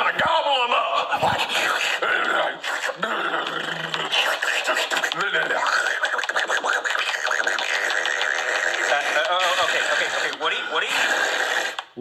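A man's voice making loud, nearly continuous wordless noises, exaggerated chomping and munching sounds of eating, voiced for a puppet.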